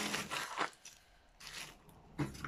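Rubbing and crunching of a selfie-stick tripod's plastic phone clamp being handled and turned over. It comes in two stretches, the first in the opening half-second, the second shorter and fainter about a second and a half in.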